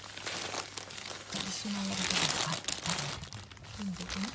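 Crinkly fabric of a pet play tunnel rustling and crinkling as an otter moves and pushes through it, loudest around the middle.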